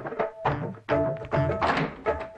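Film background music: a quick run of struck notes with percussion hits, about three strokes a second.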